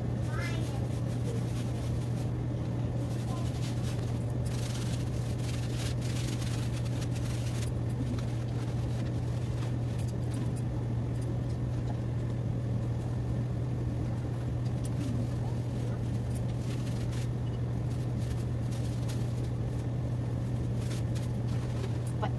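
A steady low hum, unchanging throughout, with faint scratchy sounds now and then.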